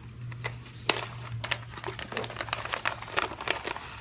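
Clear plastic zip-lock bag of wood shavings being pulled open and handled: crinkling plastic with many small, irregular crackles.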